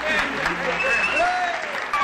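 Audience in a packed hall applauding, with voices calling out over the clapping.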